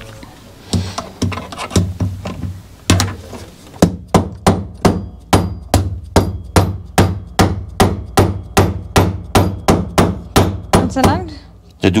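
Rubber mallet tapping repeatedly on a part held against an open Simson two-stroke engine crankcase, driving it into place. It starts with a few spaced knocks, then settles into a steady run of about three strikes a second, with a brief pause near the end.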